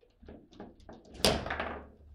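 Table football play: a few light clicks and taps of the ball against the figures and rods, then one loud, sharp bang about a second and a quarter in that dies away over half a second.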